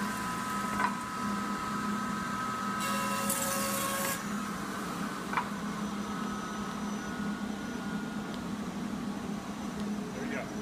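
Table saw with a dado blade running, with a short burst of the blade cutting through wood about three seconds in. The blade's whine fades after about four seconds, leaving a steady low hum.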